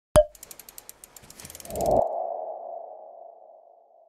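Logo-animation sound effects: a sharp click, then a quick run of fading ticks about ten a second, then a swelling whoosh about two seconds in that settles into a single ringing tone and fades away.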